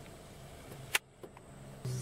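A Land Rover's engine idling faintly, with one sharp click about halfway; the idle comes in as a steady low hum near the end.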